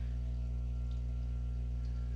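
Soft background music: a steady low drone with a few faint held tones above it and no beat.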